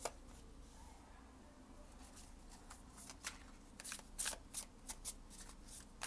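A deck of tarot cards being shuffled by hand: a sharp tap at the very start, then from about two seconds in a quick run of short, crisp card-on-card slides and slaps.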